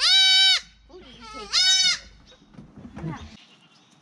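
Young goat kid bleating loudly twice, high-pitched calls each about half a second long, some one and a half seconds apart.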